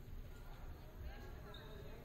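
Indistinct chatter of a few people in a large gymnasium, with irregular low thuds underneath.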